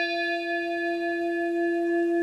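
Ringing of a struck bell-like chime: one steady low tone with higher overtones, the highest of them slowly dying away.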